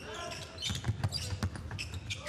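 A basketball being dribbled on a hardwood court: several sharp bounces spread through the moment, amid the players' court sounds.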